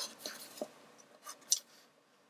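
Pencil scratching along a ruler on paper and the ruler being shifted and set down as straight lines are drawn: a few short, quiet scrapes and taps, the sharpest about one and a half seconds in.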